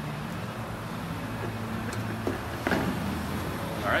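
A steady low hum in the background, with two short knocks about two seconds and nearly three seconds in.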